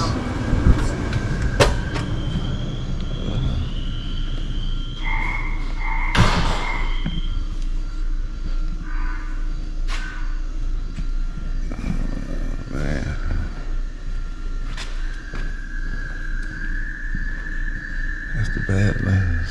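Indoor shop ambience: a steady low hum with scattered clicks and knocks, and a few faint high steady tones, one held for the last few seconds.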